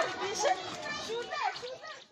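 A young child's high-pitched voice chattering and babbling, growing quieter toward the end.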